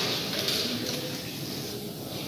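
Wide flat brush stroking across watercolour paper, a soft scratchy hiss strongest in the first second and fading after, over faint room murmur.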